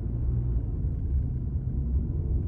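Steady low rumble of a moving car's tyres and engine, heard from inside the cabin while driving.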